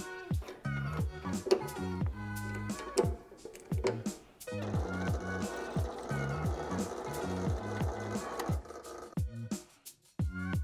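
Background music with a steady beat throughout. From about halfway in, for about four seconds, a bench drill press runs as its bit cuts through a stainless steel medallion, opening up a hole with a slightly bigger bit.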